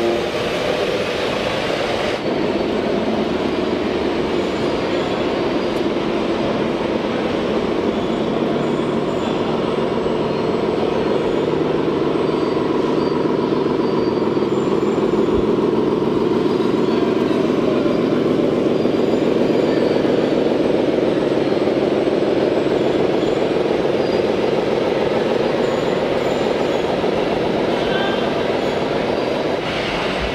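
Simulated diesel truck engine from the sound modules of RC model trucks, running steadily with a rapid, even throb and swelling slightly towards the middle.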